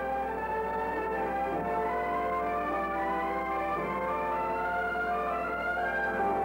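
Orchestral western film score with brass, playing long held notes.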